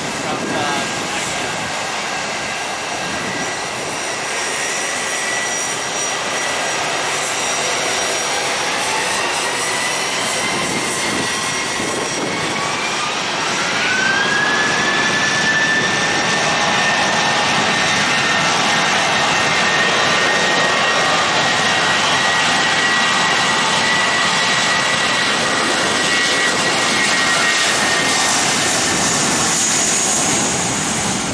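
Jet engines of a JetBlue Airbus A320 spooling up for takeoff: a whine climbs in pitch over several seconds, then holds steady at takeoff power as the engine noise grows louder about halfway through.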